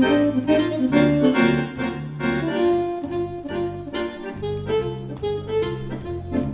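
Two Roland digital accordions playing a jam duet: a quick melody line of changing notes over bass notes pulsing about twice a second.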